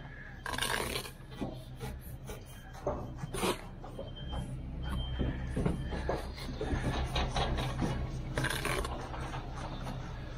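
Steel brick trowel scraping and spreading sand-and-cement mortar along the top of a brick wall, in a run of strokes; the longest, loudest scrapes come about half a second in, at three and a half seconds and near the end. A steady low hum runs underneath.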